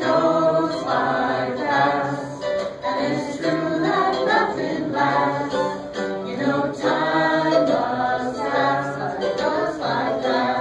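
A small mixed group of women's, men's and a child's voices singing a song together in unison, in a loud, continuous run of sung phrases.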